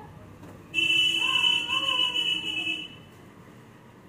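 A loud, steady high-pitched beep or buzzer-like tone starts abruptly about a second in and lasts about two seconds, with a faint voice underneath.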